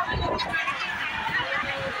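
Voices of several people talking and chattering close by, with a low rumble underneath.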